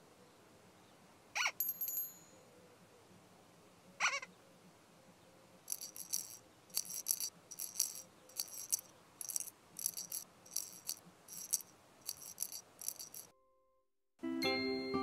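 Children's-show sound effects: two quick rising whistle-like sweeps, then a shaker-type rattle sounding in regular strokes, about two or three a second, that stops just before the end.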